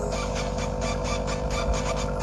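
A steady mechanical hum with a fast, regular rasping rhythm, about seven strokes a second.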